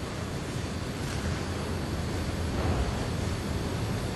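Steady rushing background noise with no distinct events, a little louder from about a second in.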